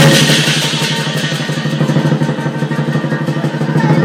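Chinese lion dance percussion: the big drum, cymbals and gong played in a fast, continuous roll of about ten strokes a second, with a steady ringing tone and bright cymbal hiss over it.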